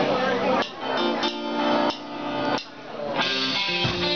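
Electric guitar playing a few sustained chords, with short breaks between them. About three seconds in, the rest of the rock band comes in with a fuller sound and a low drum thump.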